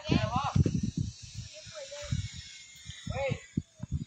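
A person's voice in short snatches, at the start and again about three seconds in, with soft low thumps and a faint hiss in between.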